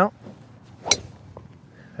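A golf driver swung through a practice stroke, its head clipping an empty tee with one sharp click about a second in.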